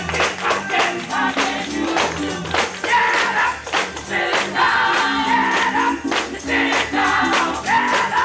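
Gospel music: a choir singing over a steady beat with a tambourine shaking in time.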